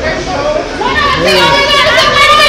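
Several people's voices overlapping in excited, high-pitched chatter, getting louder about a second in.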